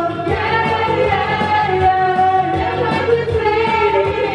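Karaoke singing: people singing loudly into microphones over a pop backing track with a steady beat.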